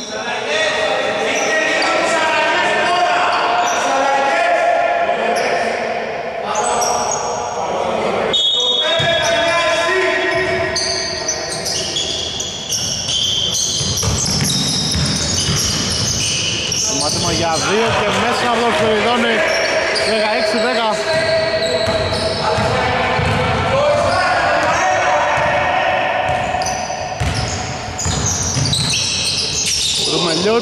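Basketball being dribbled on a hardwood court, its bounces echoing in a large sports hall, mixed with players' shouts and calls during live play.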